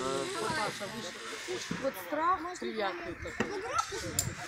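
Several people's voices talking indistinctly and overlapping, with a few quick high rising calls among them.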